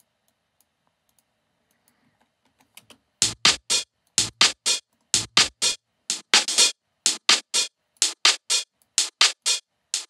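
An electronic percussion loop of short, noisy, hi-hat-like hits in a rolling techno rhythm, starting about three seconds in after near silence. Its low end is cut away by a high-pass EQ: the first hits have some deep low content, and from about five seconds in only the upper, hissy part is left.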